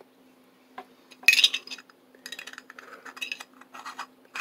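Solid-brass pocket compass and its metal lid being handled, clinking together: a sharp metallic clink about a second in, followed by a run of lighter clicks.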